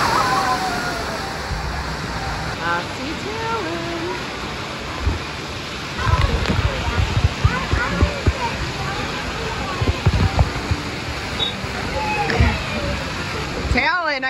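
Giant tipping bucket on a splash play structure dumping its load: a loud rushing crash of water near the start, then steady pouring and spraying water with children's voices in the background. Several dull thumps come in the middle.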